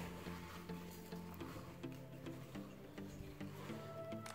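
Soft background music of held, steady notes that change pitch every second or so. Faint clicks from a wooden spoon stirring stiff dough in a glass bowl sound under it.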